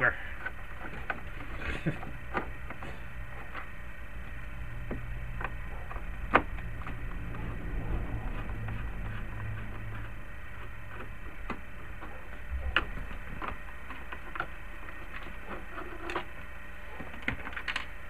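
Irregular clicks and taps of a long screwdriver working in behind a plastic vehicle dashboard, the sharpest about six seconds in, over a steady low hum.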